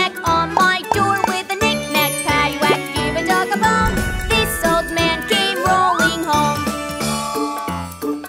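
Children's nursery-rhyme song: voices singing the verse over bright, tinkly instrumental music with a steady beat, with a few sliding pitch glides.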